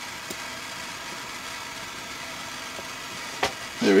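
Propane torch burning with a steady hiss. A single sharp tap comes near the end.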